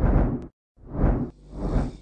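Three whoosh sound effects, each swelling and falling away within about half a second: one already under way at the start, one about a second in, and one near the end.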